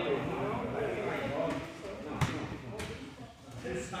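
Indistinct men's voices talking in the background, with one sharp thump about halfway through, the loudest sound.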